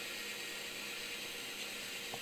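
N-scale model train running on the layout: a faint steady hum under a constant hiss.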